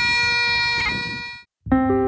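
Great Highland bagpipes playing a tune over their steady drones, with a change of note just before a second in, then fading out about a second and a half in. After a brief silence, a different piece of background music starts near the end.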